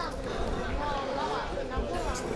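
Faint, scattered voices of players and onlookers at an outdoor football match, talking and calling across the pitch.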